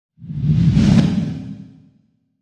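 Logo-reveal whoosh sound effect with a deep rumble under it: it swells up just after the start, peaks around the first second, then fades away.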